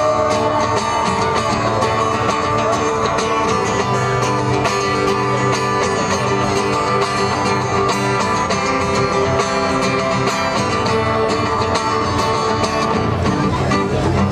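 Live band playing an instrumental passage at steady concert loudness, with plucked strings to the fore and sustained held notes beneath.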